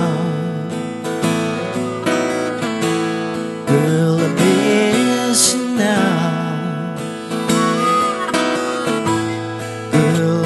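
Instrumental break of a country-blues song: harmonica playing bending lead lines over a strummed acoustic guitar, with heavier strums about a third of the way in and near the end.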